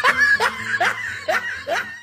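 A person laughing in a run of short, even "ha" syllables, about two to three a second, each rising in pitch.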